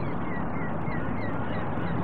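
Outdoor ambience: a steady rushing background with many short, high bird calls scattered over it.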